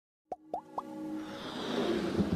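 Intro sting for an animated logo: three quick cartoon plop sound effects, each rising in pitch, about a quarter second apart, then a musical swell that builds steadily louder.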